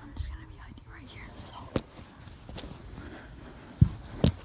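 Quiet whispering, with cloth rustling and handling noise close to the microphone. A sharp knock comes about halfway through, and a louder thump near the end.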